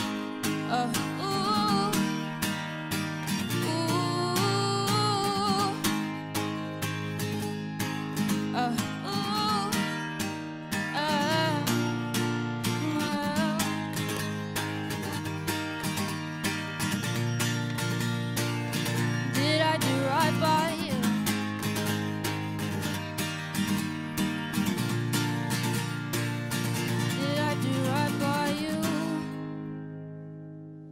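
Acoustic guitar strummed steadily, with a woman's voice singing at times over it. Near the end the last chord rings and fades out as the song ends.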